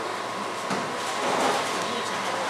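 Steady background noise of a busy indoor room, with faint, indistinct talking mixed in.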